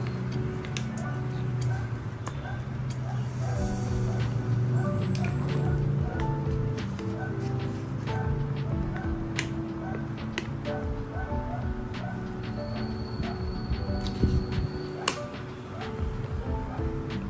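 Background music of held, overlapping notes. Under it are scattered light clicks and crinkles of paper as the release paper is peeled off a cardboard cockroach glue trap.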